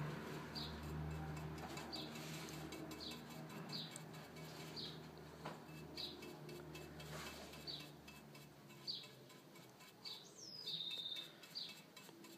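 A small bird chirping in the background: short high chirps about once a second, with a longer falling whistle that settles into a held note near the end.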